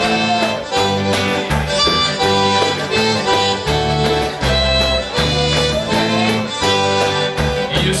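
Live band playing an instrumental passage: piano accordion with acoustic guitar and electric bass. The accordion's held notes step through the melody over a steady bass pulse.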